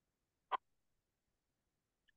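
Near silence on a video-call line, broken by a single short click about half a second in.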